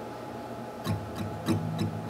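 Steel-string acoustic guitar fingerpicked, single plucked notes starting about a second in, each with a sharp attack.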